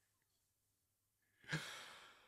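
Near silence, then a single breathy sigh from a man close to the microphone about one and a half seconds in, fading out in under a second.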